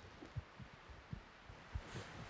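A cloth duster wiping a whiteboard: faint rubbing with soft, irregular low thumps as it is pressed and dragged across the board. The rubbing grows a little louder near the end.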